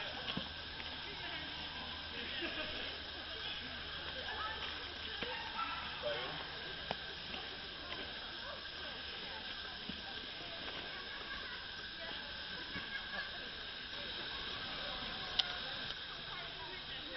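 Faint, scattered voices of people some way off over a steady hiss, with one sharp click near the end.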